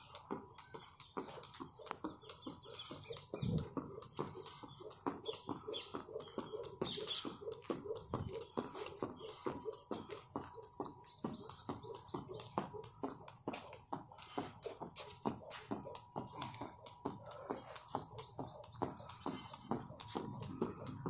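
Jump rope skipping on paving: the rope slapping the ground and the shoes landing with each turn, short clicks in a quick, steady rhythm.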